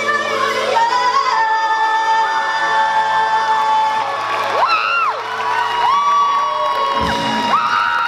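Rock band and a large group of singers holding the song's final chord, with the band's low end cutting off sharply about seven seconds in. Voices whoop and slide up and down over the held chord from about halfway through.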